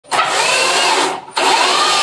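Cordless drill-driver running in two bursts of about a second each with a brief stop between them, its motor pitch rising and falling within each burst, as it drives screws into wardrobe panels.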